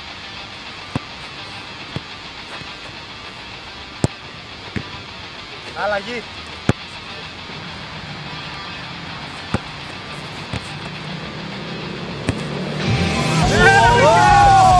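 A football kicked several times: sharp single thuds of boots striking the ball, a few seconds apart. Under them runs a steady hum of street traffic.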